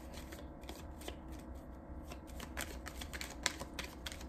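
A deck of tarot cards shuffled by hand: a fast, irregular run of soft card clicks and flicks.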